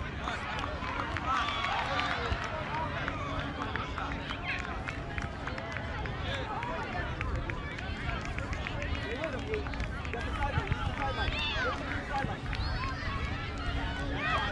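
Many overlapping voices of spectators and young players calling and shouting across an open field, none clear, over a steady low rumble.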